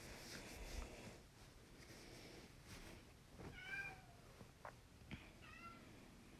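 A house cat meowing twice, faintly, from outside the room as it asks to be let in. Each meow is short and bends up and then down in pitch.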